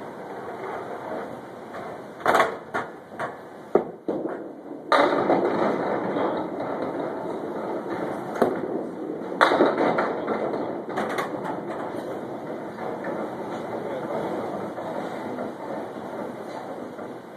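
Candlepin bowling alley sounds: a few sharp knocks and clacks, then from about five seconds in a steady rolling noise, with another loud clatter a little past the middle.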